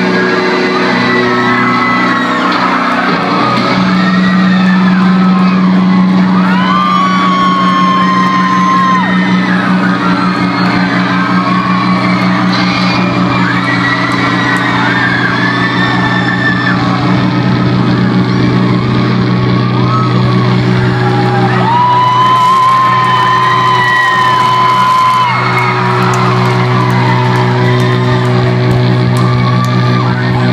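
Live rock band playing loudly through a venue's sound system, long held low notes under wavering higher lines, with the crowd shouting and cheering.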